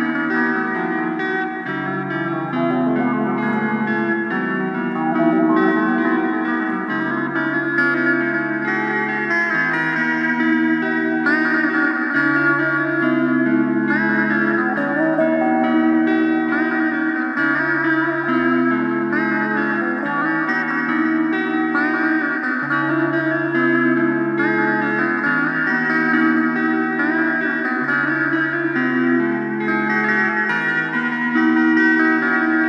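Blues-rock guitar instrumental with echo: a repeating chord pattern over a steady low note line, with slide-guitar phrases gliding in pitch from about a third of the way in.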